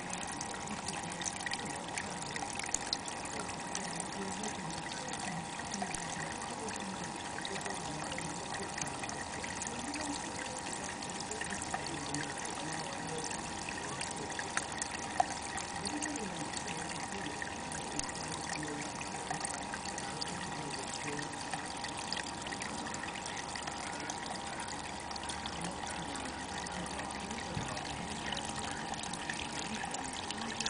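Water trickling steadily into a garden pond, a continuous soft splashing with small drips throughout.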